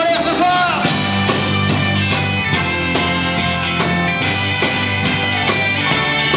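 Breton bombarde, a double-reed folk shawm, playing a loud, reedy melody over a live rock band with bass and drums. It comes in about a second in, as a sung line ends.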